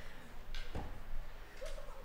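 Room sounds in a church hall: two soft knocks about half a second apart early on, over a low hum, and a brief faint voice near the end.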